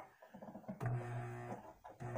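Faint background music with a plucked guitar, heard at low level, along with a few light clicks.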